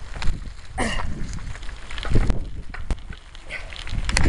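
Low rumbling wind and handling noise on a handheld camera's microphone, with a few knocks and a thump about two seconds in.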